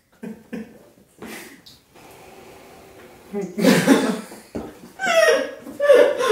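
Men laughing with short breathy bursts, a loud cough about three and a half seconds in, and a pitched laugh sliding down near the end.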